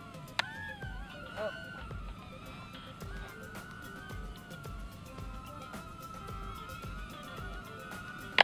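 Mini quadcopter's tiny motors and propellers whining steadily in flight, the pitch wavering and dipping slightly as the throttle changes.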